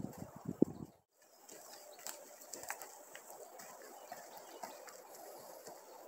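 Faint outdoor ambience with scattered soft ticks and faint bird calls. The sound drops out briefly about a second in.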